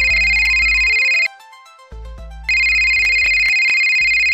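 Smartphone ringing for an incoming call with a steady, high electronic ringtone. The ring stops about a second in and starts again about halfway through, over a low, pulsing music bed.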